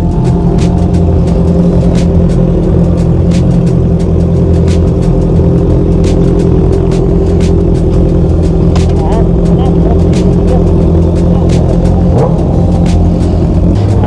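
Motorcycle engine idling steadily, an even low-pitched note with a few faint clicks over it.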